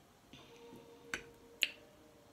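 Two sharp clicks about half a second apart: a metal fork tapping and scraping a plate while scooping up mac and cheese.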